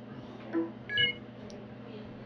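A short electronic beep of a few steady high tones about a second in, just after a brief low sound, over a faint steady hum.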